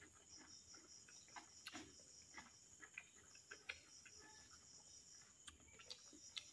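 Very faint eating sounds: scattered soft clicks and smacks of fingers working rice and meat curry and of chewing, over a steady, high-pitched background chirring.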